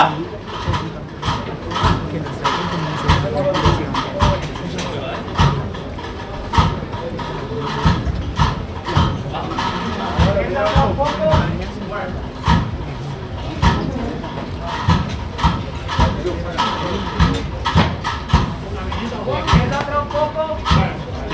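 Feet of the costaleros carrying a procession float, stepping and scraping on the street pavement in a steady shuffle, about two or three steps a second, under indistinct crowd talk.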